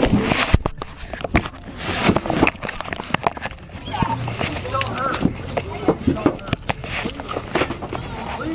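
Scuffling and irregular knocks and clicks from a body-worn camera rubbed and bumped against clothing during a struggle, with muffled voices underneath.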